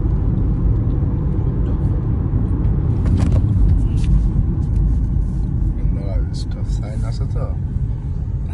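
Steady low road and engine rumble heard inside the cabin of a moving car, with faint voices coming in briefly past the middle.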